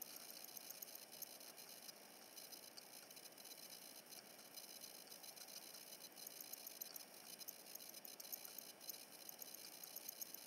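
Near silence: faint room noise with light scattered ticks.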